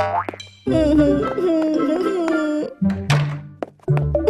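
Cartoon background music, a light melody over a bass line. It opens with a quick rising cartoon sound effect, and a second upward swoosh comes about three seconds in.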